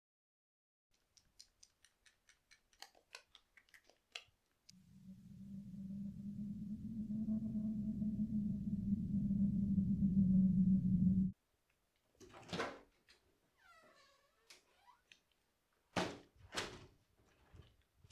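A run of light clicks, then the steady low hum of a car driving on the road, swelling for about six seconds and cutting off abruptly. A few thumps follow near the end.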